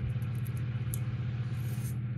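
A steady low hum, like a small motor or appliance running, with faint light ticks from small metal parts being handled.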